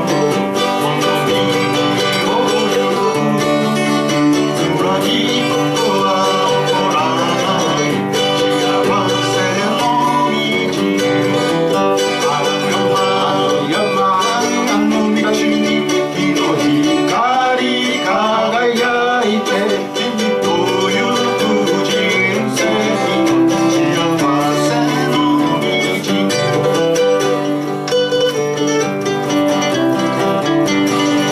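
Acoustic guitar and a second plucked string instrument playing a folk song together.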